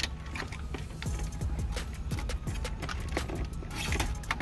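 Plastic clicks and small knocks as wiring-harness connectors are worked loose from the back of a factory car radio, over quiet background music.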